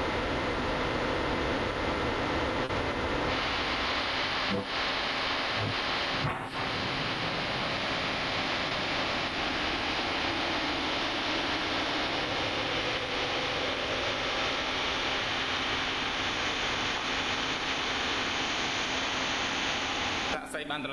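A steady, fairly loud hiss of noise, like static on an audio line, with two brief dips about four and a half and six and a half seconds in.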